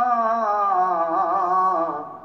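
Unaccompanied male voice singing an Urdu naat, drawing out one long note that dips in pitch midway and fades near the end. It is heard through a television's speaker.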